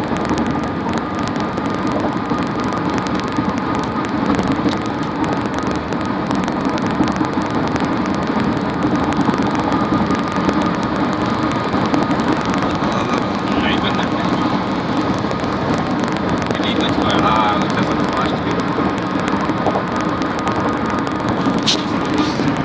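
Steady road and engine noise inside a car's cabin while it drives at highway speed, with a faint steady whine running through it.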